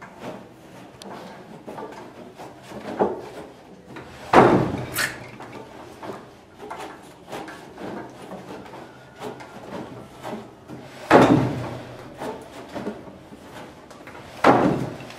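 Wooden upright treadle loom being worked by hand and foot: two loud wooden thumps about seven seconds apart, with softer clacks and knocks of the loom's wooden parts between them.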